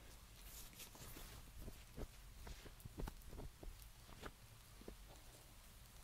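Faint rustling with a scattering of soft taps and clicks close to the microphone, as gloves are pulled off by hand.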